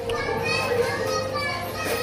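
High-pitched children's voices chattering and calling, over a steady low hum.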